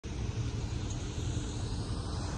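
Steady, flickering low rumble of wind buffeting a phone microphone, over a faint outdoor background hiss.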